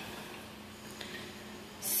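White wine pouring steadily from the bottle through an aerating pourer into a glass: a faint, even hiss of running liquid.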